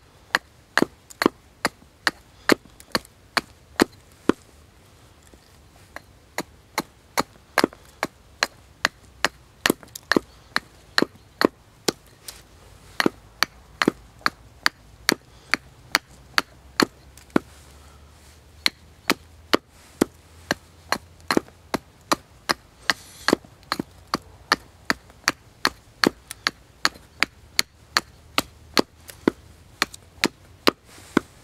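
Small hatchet chopping into a hand-held stick resting on a wooden chopping block, roughing out one side of a wooden wedge. Sharp strikes come at about two a second, with a short pause about four seconds in.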